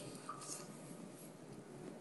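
Faint rustle of paper as the pages of a large book are handled, over quiet room tone.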